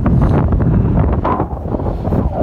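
Wind buffeting the microphone: a loud, low rumble.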